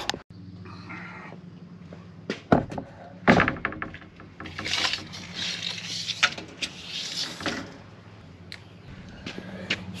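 Handling noise as a wooden board is set on a pickup tailgate and measured with a tape measure: a few sharp knocks about two and a half and three seconds in, then several seconds of scraping and rustling, over a steady low hum.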